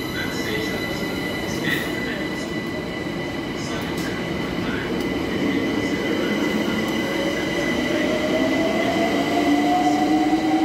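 London Overground electric multiple-unit train at the platform, its electrical equipment giving a steady high whine over a low rumble. From about seven seconds in, a rising electric whine grows louder, like traction motors pulling away.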